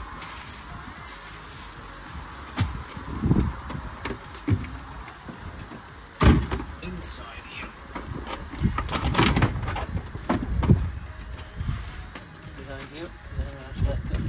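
Irregular knocks, clicks and rattles of plastic interior trim panels in a 2007 Volvo V70's load area being handled and pried loose. The sharpest knock comes about six seconds in, with a busier run of knocks a few seconds later.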